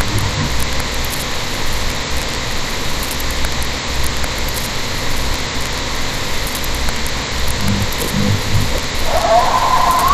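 Steady hiss over a low rumble. Near the end a wavering higher tone comes in.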